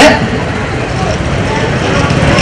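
Steady background noise of an outdoor ground with faint distant voices.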